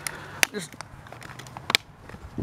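Handling noise as hands work a microwave oven's small fan motor loose: two sharp clicks about a second and a half apart, over a faint low hum.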